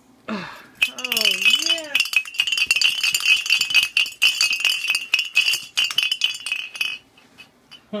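A small metal bell shaken hard and fast, ringing and clattering loudly and continuously; it starts about a second in and stops about a second before the end.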